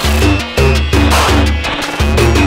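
Electronic music from a patched modular synthesizer: heavy low bass notes repeating about twice a second, with noisy percussive hits and sweeps above them.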